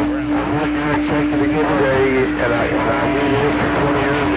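CB radio speaker on channel 28 receiving long-distance skip: garbled, overlapping voices through static, with a steady low tone running under them.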